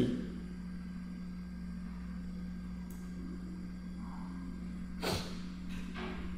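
Steady low electrical hum in the recording, with a brief rush of noise about five seconds in.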